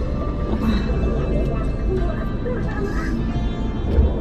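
Steady low rumble of a car's interior while driving slowly in traffic, with music and indistinct voices over it.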